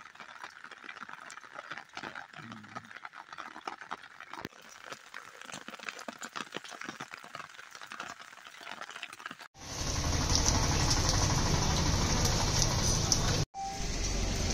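Rain falling: a faint crackle of drops at first, then, about two-thirds through after a sudden change, a much louder steady rush of rain.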